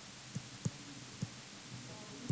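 Faint soft taps of a stylus on an interactive whiteboard during handwriting: three short low thuds about a third of a second, two-thirds of a second and just over a second in, over a steady hiss and hum.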